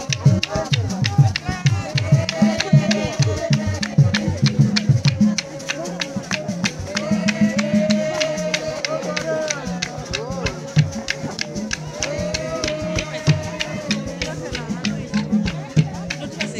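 Congregational singing to a steady beat of shaken rattles, with deep drum beats that stop about a third of the way in while the singing and rattles go on.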